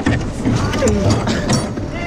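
Men laughing and whooping in a rowing boat, with knocks and creaks from the oars working in their metal rowlocks.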